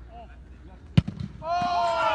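A football struck hard with a sharp thud about a second in. Half a second later several voices break into excited shouts and cheers at the half-volley goal.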